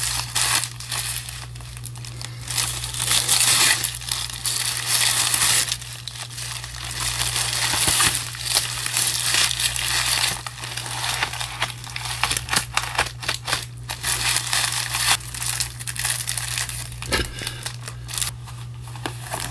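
Paper and packaging crinkling and rustling as they are handled, in dense runs of small crackles, over a steady low hum.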